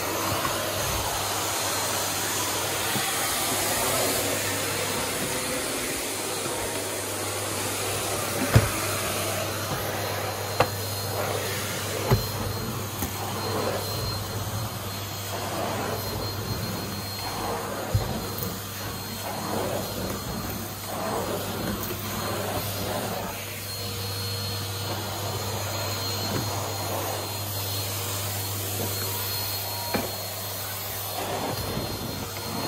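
Numatic James cylinder vacuum cleaner running steadily while its floor head is pushed across the floor, with a few sharp knocks along the way.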